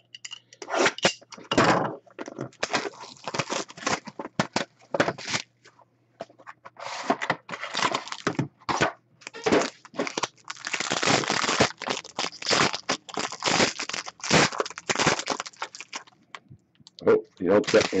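Sealed trading-card box being slit open and its plastic and foil wrapping torn off: a long run of irregular crinkling, crackling and tearing, which pauses briefly about six seconds in. A voice starts near the end.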